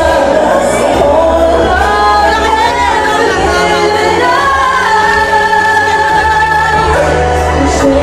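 A female singer sings live into a microphone over backing music, amplified through a sound system. She holds one long note from about four to seven seconds in.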